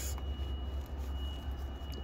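Steady low hum from a powered-up VRF outdoor unit, with a faint steady high-pitched whine above it.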